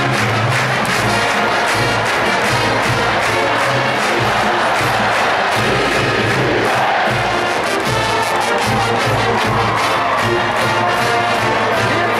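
College marching band playing on the field: massed brass over a steady drum beat, with stadium crowd noise swelling a little past the middle.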